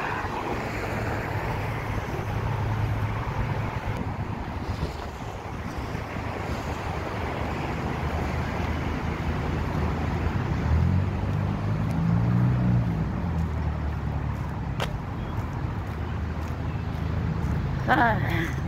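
Street traffic: cars passing on the road, with wind rumbling on the phone's microphone. Partway through, one passing vehicle's engine swells and fades, and a single sharp click comes a little later.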